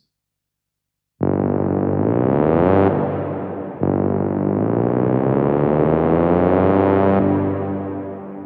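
Techno synth-horn patch from an Ableton Live Wavetable instrument rack, played as two held, buzzy notes with reverb. The first starts about a second in and is pitch-bent upward and back down. The second is held, then fades out slowly near the end.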